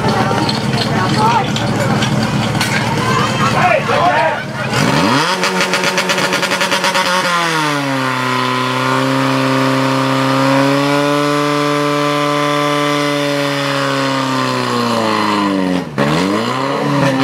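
Spectators shouting over a low rumble, then about five seconds in a portable fire pump's engine revs up sharply and runs at high revs, settling a little lower about seven seconds in and holding steady while it drives water through the attack hoses, before winding down at the very end.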